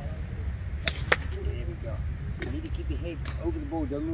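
Golf iron striking a ball off an artificial-turf practice mat: one sharp click about a second in, with a couple of fainter clicks after it.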